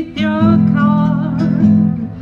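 A woman singing with acoustic guitar accompaniment, recorded live; the sung line wavers on a held note over sustained guitar chords.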